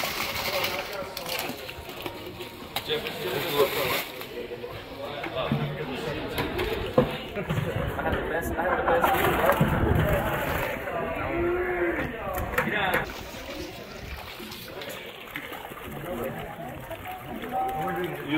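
Fruit tipped from plastic buckets splashing into the liquid in a copper still pot, under the chatter of a group of people.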